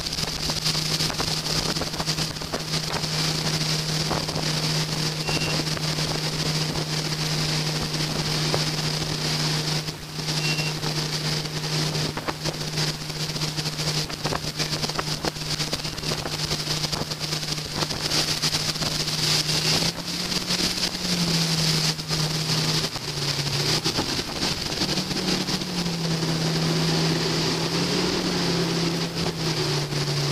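Tow boat's engine running steadily under way, a low drone over the hiss of the wake and wind on the microphone; in the last third its pitch steps up and down.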